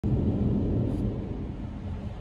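Low, steady road and engine rumble heard inside a moving car's cabin, a little louder in the first second.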